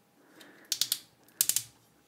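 Hard plastic parts of a transforming toy figure and its add-on arm clicking as they are handled: two short runs of quick clicks, under a second apart.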